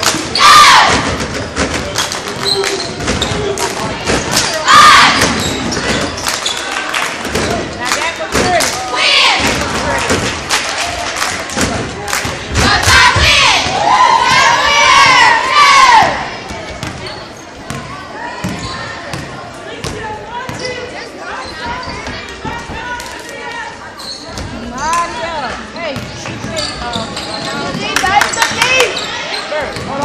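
Basketball bouncing and dribbling on a hardwood gym floor during play, a run of sharp knocks that echo in the hall. Shouting voices from players and spectators come and go over it, with the longest, loudest stretch of yelling from about 13 to 16 seconds in.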